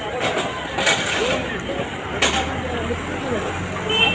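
Busy street sound by a bus stand: men talking close by over traffic, with a vehicle engine running low and growing stronger past halfway, and two short sharp knocks about one and two seconds in.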